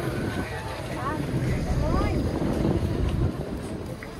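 Motorbike engines running among a walking crowd, with scattered voices and wind on the microphone.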